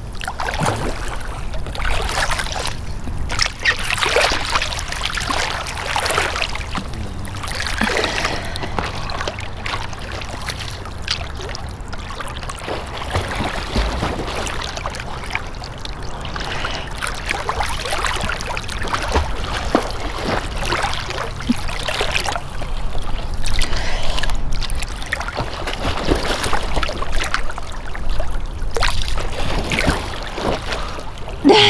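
Lake water lapping and sloshing right at the microphone, which sits at the surface of choppy water, with irregular splashes throughout over a steady low rumble.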